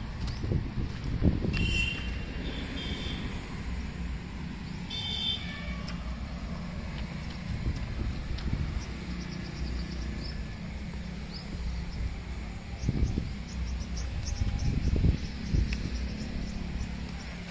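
A steady low engine hum, with louder low rumbles about a second in and again near the end, and a few short high chirps in the first five seconds.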